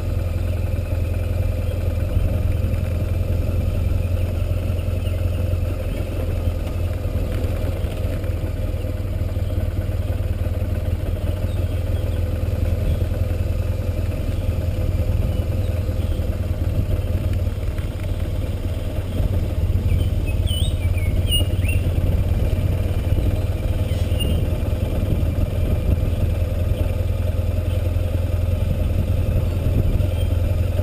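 Motorcycle engine running steadily as the bike rides along at an even pace.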